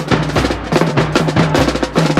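Marching snare drum played up close with fast, dense strokes and rolls. Beneath it, the rest of the marching band plays held low notes that change pitch every fraction of a second.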